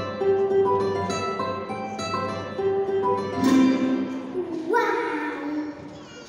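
Acoustic guitar played solo: a short melody of single picked notes, then two fuller strummed chords about halfway through.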